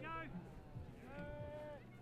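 Shouted calls across a playing field: a short high-pitched call at the start and a longer drawn-out one about a second in, over a low steady hum.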